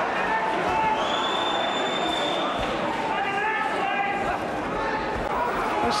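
Boxing arena crowd shouting and cheering, many voices overlapping in a large hall, with a high steady tone held for over a second about a second in.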